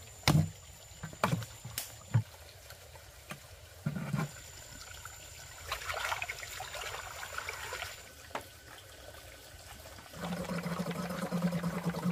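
Hands scooping mud and water out of a shallow muddy spring: a few sharp knocks and thuds early on and about four seconds in, then water splashing and sloshing. Near the end a steady low drone sets in under the water noise.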